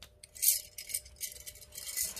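Small metal pieces jingling and clinking together as they are handled, in two short bursts.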